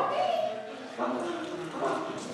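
A person's voice giving several short, loud shouted calls in quick succession.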